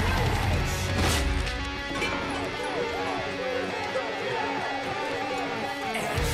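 Guitar-driven rock music; the heavy low end drops away about two seconds in, leaving lighter guitar lines and a voice.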